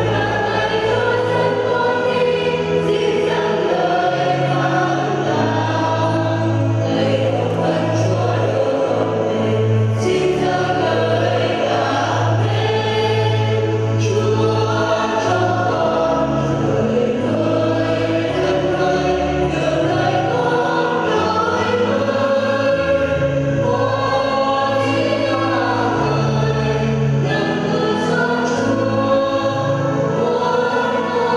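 A church choir singing a hymn over sustained low accompanying notes, steady and unbroken.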